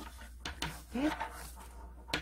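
Faint rustling and light handling as a ribbon is drawn through a loop wrapped around a plastic clothes hanger, with one short spoken word in the middle.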